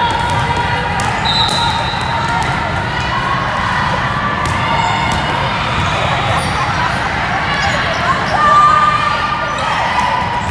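Echoing din of a busy multi-court indoor volleyball gym: a steady mix of voices with sharp volleyball hits and bounces throughout. A short high referee's whistle blast sounds about a second and a half in, signalling the serve.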